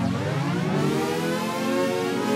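Electronic music being pitch-bent upward by the Ghammy pitch shifter, set to one octave up: its pitch glides smoothly up like a siren while the Momentary button is held, standing in for an expression pedal.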